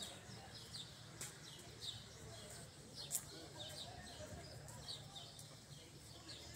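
Small birds chirping in the trees: many short, quick, falling chirps, one after another. A single sharp click sounds about three seconds in.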